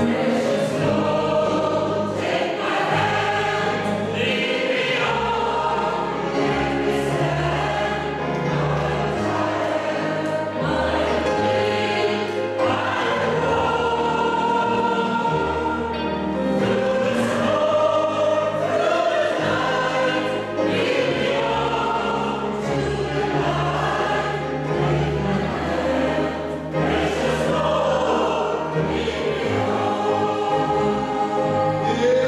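Mixed choir singing a slow gospel song, accompanied by piano, upright double bass and electric guitar, with the bass holding sustained low notes beneath the voices.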